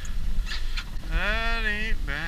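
A man's long, drawn-out excited exclamation, a held 'ooh' starting about a second in, at a crab pot full of Dungeness crabs coming up. Low wind rumble sits on the microphone underneath.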